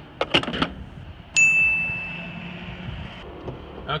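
A few clicks and knocks, then a single loud electronic ding about a second and a half in: one clear high tone that starts sharply and fades away over about a second and a half.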